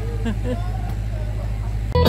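A steady low hum, with faint voices over it, until guitar music starts at the very end.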